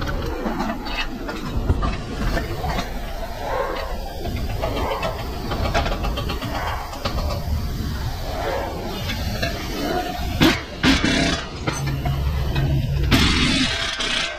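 Workshop noise with metal tool clanks, then near the end a short burst from an air impact wrench on the tie rod end nut.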